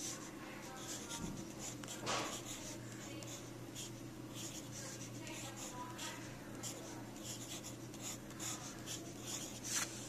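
Pencil writing numbers on notebook paper: a run of short, irregular scratching strokes.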